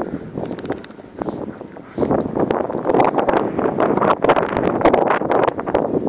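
Wind buffeting the microphone in gusts, a rough rumbling rush with crackle, growing louder about two seconds in.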